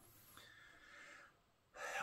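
A man's faint breathing in a short pause between sentences, dropping to dead silence for a moment, then a quick in-breath near the end as he is about to speak.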